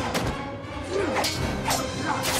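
Film soundtrack of a fight: a music score under three sharp hits, one just after the start and two more in the second half, with short shouts or grunts.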